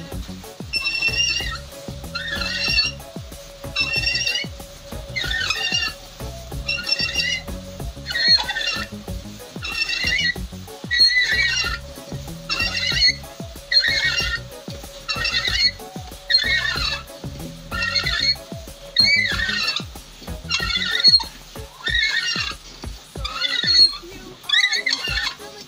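A hand reamer squeals as it is turned in the aluminium camshaft bearing bores of a VAZ-2108 8-valve cylinder head, cutting the warped camshaft bed back true. There is one high squeal about every second, over a low grinding rumble.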